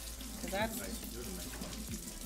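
Kitchen faucet running steadily as a knife is rinsed under it.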